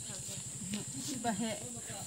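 Faint, distant talking, with a steady high-pitched hiss underneath.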